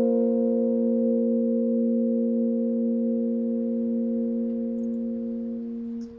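Nord stage keyboard holding the song's final chord. It is one steady sustained chord that fades slowly and cuts off near the end.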